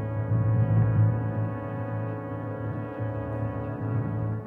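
Jazz big band holding one long sustained chord, heavy in low brass, as the closing chord of the piece.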